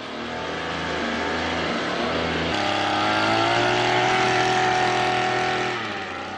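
Small engine of a backpack power sprayer running steadily while spraying disinfectant, its pitch stepping up about two and a half seconds in.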